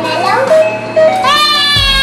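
Battery-powered toy guitar playing a tinny electronic melody over a regular low beat, its buttons pressed. A child's voice rises loudly over it in the second half.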